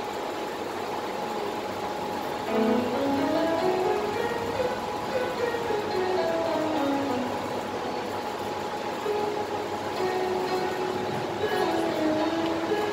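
Electronic keyboard playing a song's instrumental introduction. A melody of single notes climbs in steps for about two seconds, then steps back down, over a steady held tone.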